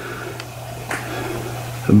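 Steady low hum with faint room noise, and a faint tick about a second in.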